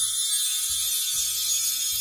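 Edited-in transition sound effect for a channel title card: a dense, bright high-pitched shimmer over soft low thuds about twice a second.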